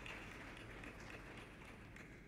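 Faint audience applause, a haze of scattered claps thinning out toward the end.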